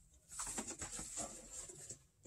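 Vinyl record jackets being handled and slid out of a cardboard shipping box: a run of soft, irregular rustling scrapes and light taps.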